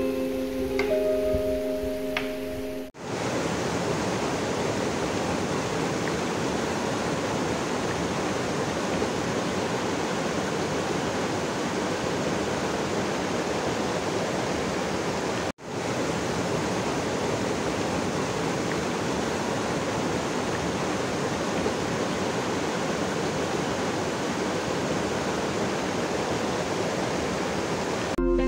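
Shallow rocky stream rushing and splashing over stones, a steady rush of water that cuts out for an instant about halfway through and then carries on. Soft mallet music plays for the first few seconds before the water takes over.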